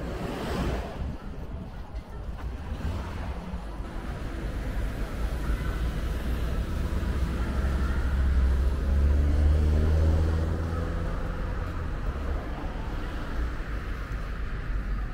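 Road traffic passing on a multi-lane road. A car swishes by about half a second in. From about eight to eleven seconds in, a heavier vehicle's engine hum swells and fades as it goes past.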